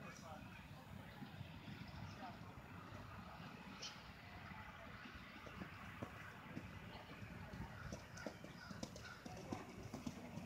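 Faint hoofbeats of a cantering pony on arena sand, with the strokes coming clearer near the end as it passes close, over low background voices.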